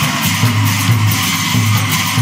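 Live Ojapali devotional music, loud and dense: small hand cymbals strike a steady beat about twice a second under a group of voices singing.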